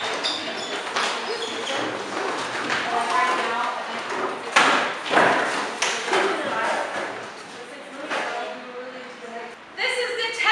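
Several children's voices chattering and calling out at once in a large echoing room, with a few sharp thumps, the loudest about halfway through, from feet and folding chairs as they move about and sit down.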